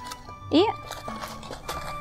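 Background music under one spoken word, with light irregular clicks and taps from a small cardboard gift box being handled as its flap is folded shut.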